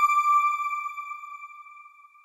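A single bright chime note from an end-card sound logo, ringing and slowly fading away.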